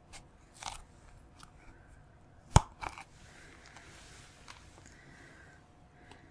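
Scissors cutting into a plastic tube of face paint: a few quiet snips and clicks, with one much louder, sharp snip about two and a half seconds in.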